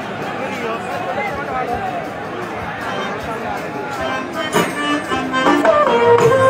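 Voices chattering for the first few seconds, then about four and a half seconds in a harmonium starts sounding held chords as the folk music begins.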